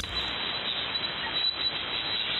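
Steady hiss of HF band noise from a single-sideband ham radio receiver while no station is talking, cut off above about 4 kHz by the receiver's filter.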